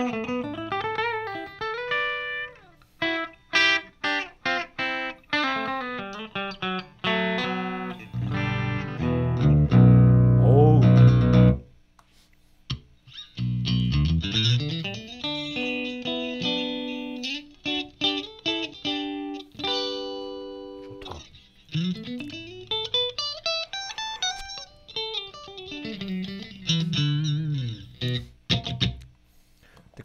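Ibanez RGMS7 seven-string multi-scale electric guitar played through a Marshall JCM2000 amp on its clean channel, with a bright, ringing tone. Fast single-note runs and arpeggios climb and fall. A loud low chord rings out from about eight to eleven seconds in, then stops for a moment before the runs resume.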